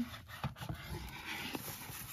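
Cardboard packaging and shredded-paper filler rustling as they are handled, with a few sharp clicks and taps from the box, the loudest near the end.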